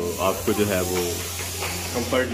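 A man talking over a steady hiss that comes in suddenly at the start and thins out toward the end, with a low steady hum underneath.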